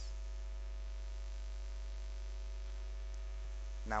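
Steady low electrical mains hum on the recording, unchanging throughout, with no handling noises heard.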